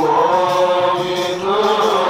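Amplified male chanting of a Maulid devotional song (qaswida), sung into a microphone in long, gliding held notes.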